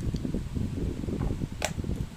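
A red plastic presser-foot case and packing being handled over a cardboard box, with low bumping and rustling and one sharp click about one and a half seconds in.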